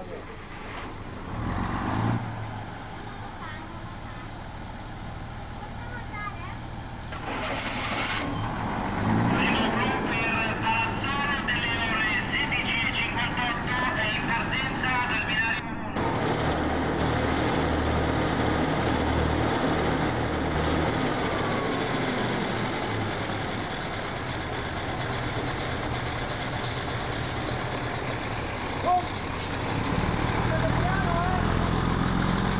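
Diesel engine of an ALn 668 railcar running, heard from the driver's cab. The engine sound builds about eight seconds in. After a break about halfway through, it runs on steadily with a low drone.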